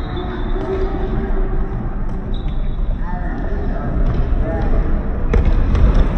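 Futsal being played in an echoing sports hall: the ball bouncing and being kicked on the wooden court, with players calling out, and a sharp knock a little after five seconds.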